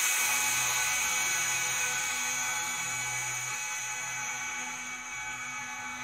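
Closing tail of a heavy metal dubstep track: a sustained, whining synth sound of many steady high tones over hiss, fading out slowly.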